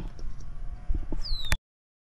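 Outdoor background with a low rumble on the microphone and a few faint knocks, then a short high falling chirp. About one and a half seconds in, a click, and the sound cuts off to dead silence as the recording ends.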